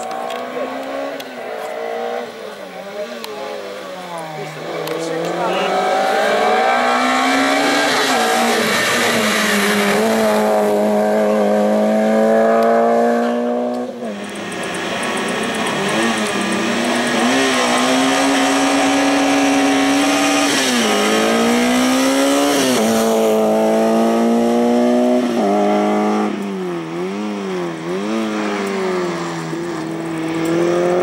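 Slalom race car, a small hatchback, with its engine revving hard as it threads the cones: the pitch climbs and drops again and again as the driver lifts off and changes gear. About halfway the sound breaks off abruptly and picks up again on a fresh run.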